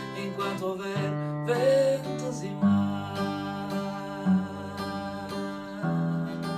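Acoustic guitar strummed. The chords change about every one to two seconds in an instrumental passage between sung lines.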